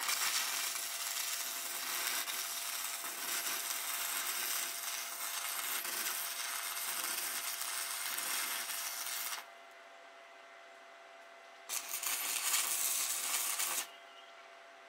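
Electric arc welding a steel frame: the arc crackles and hisses evenly through a long bead, stops for about two seconds, then strikes again for a second, shorter bead that ends near the end.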